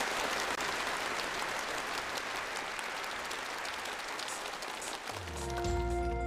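Studio audience applauding, slowly thinning out. About five seconds in, a live band starts the song's intro with deep bass and held chords.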